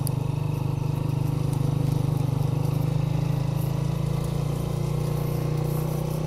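Honda 125 motorcycle's single-cylinder four-stroke engine running steadily under load on a steep uphill climb.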